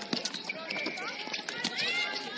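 Rapid footsteps of players running on a hard outdoor netball court, with short sharp impacts, under distant shouted calls from players.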